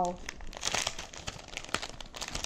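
Plastic packaging crinkling and rustling as it is handled, in quick irregular crackles.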